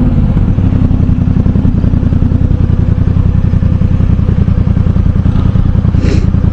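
Yamaha MT-07's parallel-twin engine, fitted with an aftermarket Arashi exhaust, running steadily at low revs, its pitch easing down slightly at first as the bike slows in traffic.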